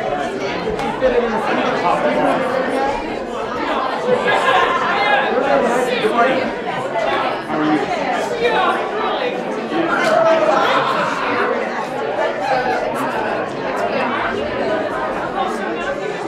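Many people talking at once in a large room: a steady, indistinct hubbub of overlapping conversation.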